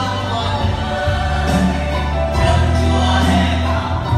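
A worship song with electronic keyboards and a group of voices singing along, over held bass notes.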